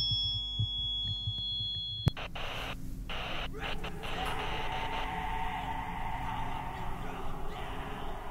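Radio-style static used as sound design: a few steady electronic tones over soft low thumps, cut off by a click about two seconds in. After the click comes a steady hiss of static with brief dropouts.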